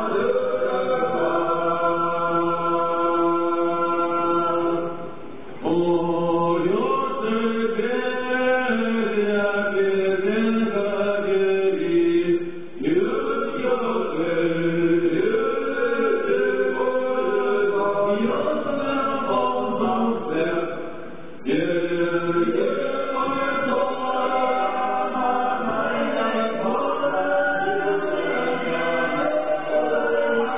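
Choir chanting in long held notes that slide between pitches, with three short drops in level.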